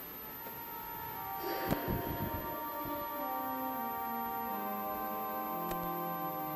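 Organ music begins about a second in, with held notes and a slowly descending line. A few low knocks sound around the two-second mark.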